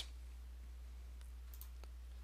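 Faint background: a low steady hum with a few faint clicks past the middle.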